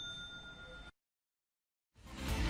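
The tail of a bright, bell-like ding ringing out and fading, cut off abruptly about a second in, followed by dead silence.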